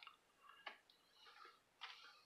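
Near silence with a few faint clicks and soft rustles, from comic books in plastic bags being handled and swapped on the shelf.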